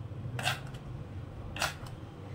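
Kitchen knife cutting a cucumber lengthwise on a wooden cutting board: two short cutting strokes about a second apart.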